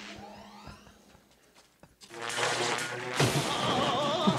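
Movie soundtrack played back from a clip: a quiet moment, then music comes in about two seconds in and gets louder about a second later.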